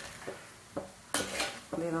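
Metal spatula stirring and mashing cooked tapioca in an earthenware clay pot, with a few short scrapes and knocks against the pot about half a second apart; the one a little past a second in is the loudest.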